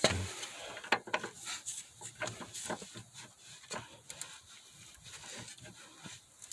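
Scattered metallic clicks and taps of a wrench and socket being fitted onto and worked on the top nut of a sway bar link, with a brief low grunt-like sound at the very start.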